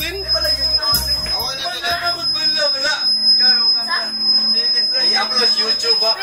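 Men laughing and talking loudly over music with a bass beat, which stops about a second and a half in. A steady high-pitched tone runs underneath throughout.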